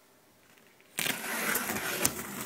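Near silence, then about a second in a steady rustling handling noise sets in as the hand-held camera is swung about close to the machine and its cardboard packing.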